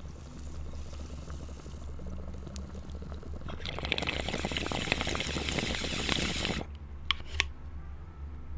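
Sound-effects track from a TV show scene: a low steady hum, then about three seconds of loud hissing, crackling noise that stops abruptly, followed by two short sharp sounds.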